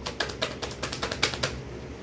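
Rapid, irregular clicking, about ten clicks a second, over a low steady fan hum.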